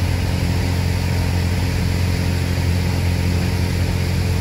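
Single-engine light aircraft's piston engine and propeller, heard from inside the cabin in flight: a steady, unchanging drone with a low hum near 100 Hz.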